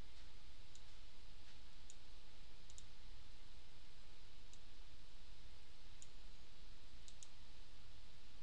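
Computer mouse clicking faintly about eight times, some clicks in quick pairs, over a steady background hiss and low hum.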